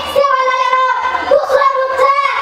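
A girl's voice declaiming in long, held, sing-song tones, halfway between speech and chant.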